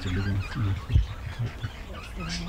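A low voice in short halting sounds, with faint chirps of small birds and a single thump about halfway through.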